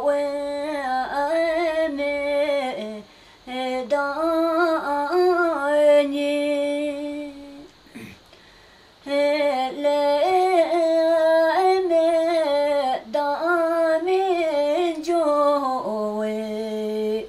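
A woman singing a traditional Bhutanese song alone, one voice with many small bends and turns in the notes. She breaks off briefly about three seconds in and for a longer pause about halfway, then goes on singing.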